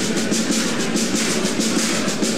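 Intro music with a fast, steady drum beat.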